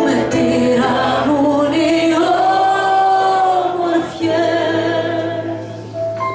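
Music: a woman sings a slow, gliding melody with a long held note in the middle, over low sustained instrumental accompaniment.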